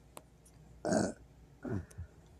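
Two short vocal sounds from a person, the first about a second in and the second, briefer and falling in pitch, near the end.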